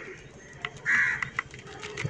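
A crow cawing once, briefly, about a second in. Faint light ticks of crumbled neem cake falling from a plastic cup onto potting soil can be heard around it.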